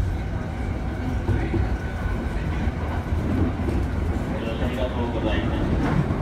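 Electric commuter train heard from inside the passenger car while running: a steady low rumble from the wheels and running gear, with faint voices in the second half.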